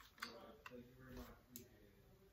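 Near silence with faint background noise: a few faint ticks and faint muffled voices from elsewhere.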